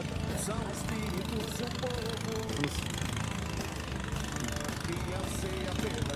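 A motor running steadily, a continuous low rumble, with faint voices over it.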